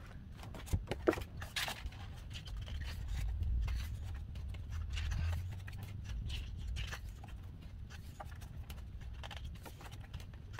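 Pages of a glossy album photobook being turned and handled: paper rustles and light taps, sharpest in the first couple of seconds, over a low rumble that swells midway.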